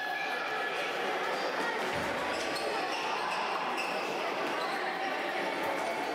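Indoor futsal play in a large sports hall: thuds of the ball being kicked and bouncing on the court, under indistinct shouting from players and people courtside.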